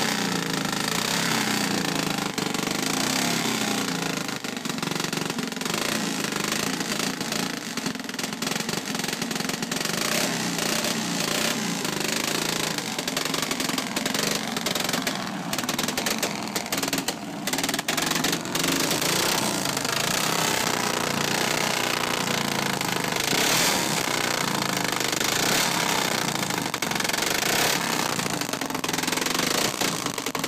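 Vintage Vincent motorcycle engine running with a rapid, loud exhaust beat, its pitch rising and falling as the revs vary, while its rear wheel spins on a roller starting rig.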